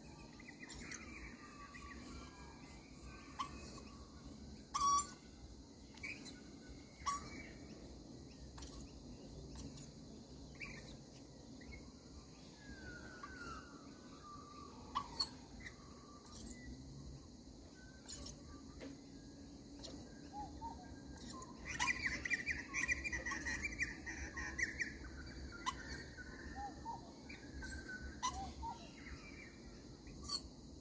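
Rainbow lorikeets calling while they feed: short, very high chirps about once a second, with a burst of lower chattering calls a little over twenty seconds in.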